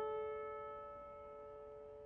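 A single piano chord, struck just before, slowly fading away with nothing else playing.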